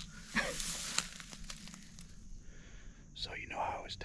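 Rustling and scuffing of fabric and gear while a shot squirrel is handled at a chest pack, with a couple of sharp clicks about half a second in. Low, whispered-sounding voices come in near the end.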